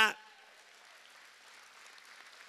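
Faint applause from a congregation: a soft, even patter of clapping that holds steady after a man's word ends.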